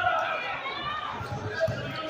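Voices talking over the sounds of a basketball game on a hard court, with players running and a few dull knocks of the ball in the second half.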